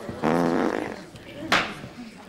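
A short voiced 'hmm' lasting under a second, then a single sharp knock about a second and a half in.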